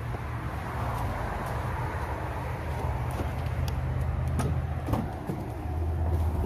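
Steady low hum of vehicles, then a few sharp clicks and a thump near the end as a car door is unlatched and swung open.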